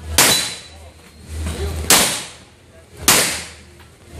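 Three handgun shots, the first about 1.7 s before the second and the second about 1.2 s before the third, each ringing out briefly off the walls of the shooting bay.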